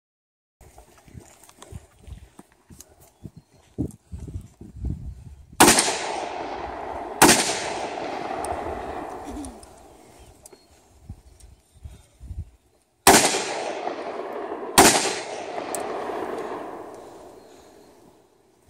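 Four gunshots in two pairs, the shots of each pair about a second and a half apart, each followed by a long rolling echo that dies away over a few seconds. Faint scattered low thumps come before the first shot.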